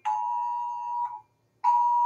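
Wireless Emergency Alert attention tone, a steady two-note tone sounding in on-off bursts: about a second on, a half-second break, then on again near the end. It is sounding for an alert that is taken for a Presidential Alert.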